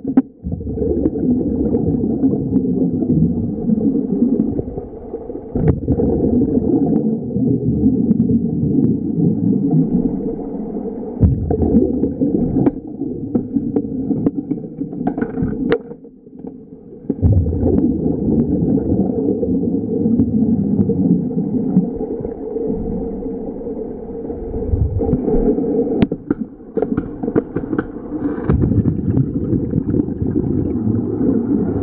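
Underwater rumbling and gurgling of a column of air bubbles rising through the water, muffled and low-pitched, with short breaks every few seconds and a few sharp clicks.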